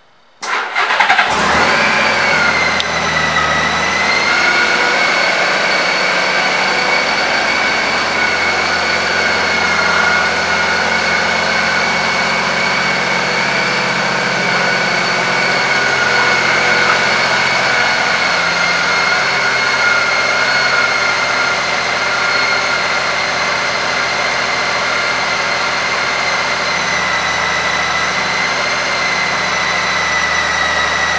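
2006 Honda Gold Wing's flat-six engine starting about half a second in, then idling steadily. A steady high whine runs over the idle.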